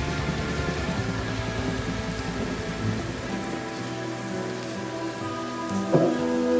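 Steady rain hiss over a quiet ambient passage of held musical notes, with a sharp, louder chord entering at the very end.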